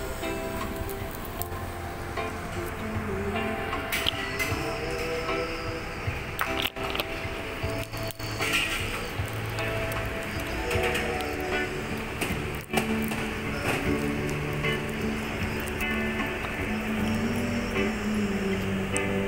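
Electronic keyboard playing long held notes and chords, with a 93-year-old man singing into a handheld microphone over it.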